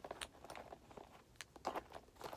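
Lipstick tubes being put into a small handbag: faint rustling with two light clicks about a second apart.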